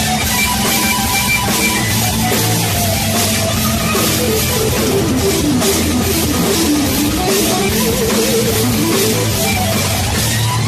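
Heavy rock music with electric guitar and drums, loud and steady. A melodic line wavers and slides in pitch through the middle.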